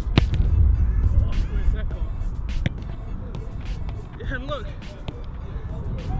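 A football being juggled and controlled with an Adidas Copa Pure boot: a series of short thuds as the boot's synthetic-leather upper strikes the ball, the first and loudest just after the start. A low wind rumble sits under it, easing after about two seconds.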